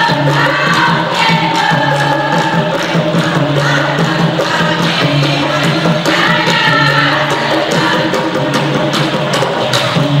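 Women's dikir barat chorus singing together in unison, a Malay call-and-response choral form, with steady rhythmic hand-clapping.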